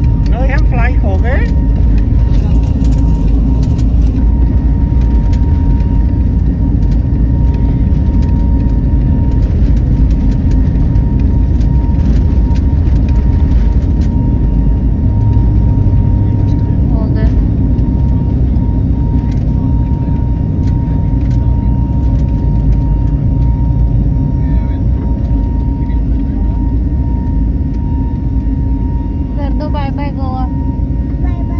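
Jet airliner's engines heard from inside the cabin: a loud, steady rumble with a thin steady whine over it, easing slightly in the last few seconds.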